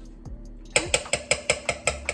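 A stirring utensil clinking rapidly against the side of a stainless steel pot holding herbal oil, about five or six clinks a second, starting under a second in. Background music plays underneath.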